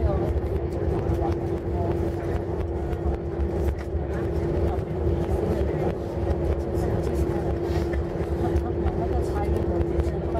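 Airliner cabin noise during the landing rollout: a steady low rumble of engines and runway with one held hum running through it.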